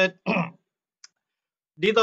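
A man speaking, broken by a pause of about a second of near silence with one faint click in it, then his speech resumes.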